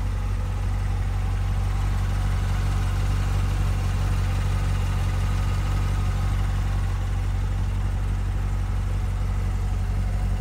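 C7 Corvette Stingray's V8 idling steadily, a deep, even low rumble.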